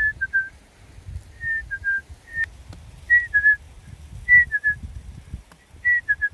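A short whistled phrase, one higher note followed by two slightly lower ones, repeating about once a second, over wind rumbling on the microphone.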